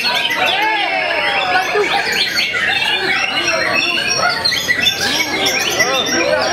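Several caged white-rumped shamas (murai batu) singing at once: a dense, unbroken tangle of whistled phrases, chirps and rapid trills, with a crowd's voices and calls mixed underneath.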